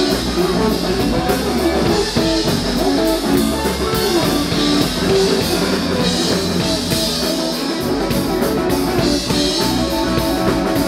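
Live rock band playing an instrumental passage: electric guitars over bass guitar and a drum kit keeping a steady beat.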